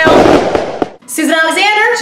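A short, loud burst of hissing, crackling noise as the title letters break apart, ending in a click about a second in; then a woman starts speaking.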